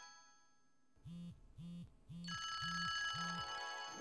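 A mobile phone going unanswered, ringing with short high chirps and buzzing on vibrate: five buzzes about half a second apart, starting about a second in. Steady background music comes in a little past halfway.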